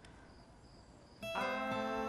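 Near silence for about a second, then soft acoustic guitar background music comes in suddenly with a strummed chord that rings on steadily.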